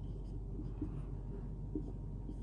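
Marker pen writing on a whiteboard, faint strokes over a low steady hum.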